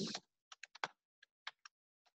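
Typing on a computer keyboard: an uneven run of about seven light key taps as a word is typed.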